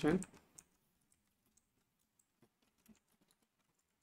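Faint, scattered keystrokes on a computer keyboard: a few soft taps spread over a few seconds while code is typed.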